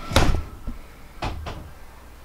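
Three knocks with a low thud under them: a sharp one right at the start, then two lighter ones close together just past a second in.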